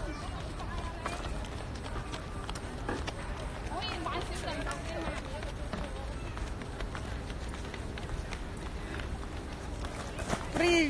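City street background picked up by a handheld phone microphone: steady noise with rustling and knocks from the phone being handled, and indistinct voices of passers-by around four to five seconds in.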